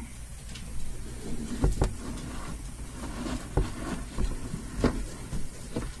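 Handling noise from hands working inside a glass reptile enclosure: a handful of short, sharp knocks and scuffs scattered through, over faint rustling.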